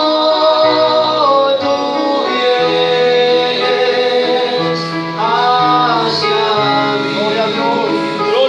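A man singing a Spanish-language worship song through a microphone and PA, holding long notes over a live accompaniment of sustained chords and a steady bass line.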